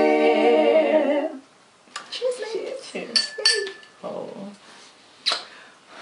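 Several women's voices finishing a held, unaccompanied sung note in harmony, which stops about a second and a half in. Short vocal sounds and sharp clicks follow, with a loud blown-kiss smack near the end.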